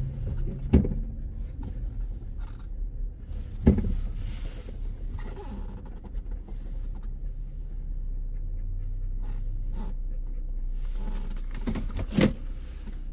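A car's engine running low, heard from inside the cabin, as the car pulls slowly into a parking space and stops. Two sharp knocks stand out, one about a second in and one near four seconds.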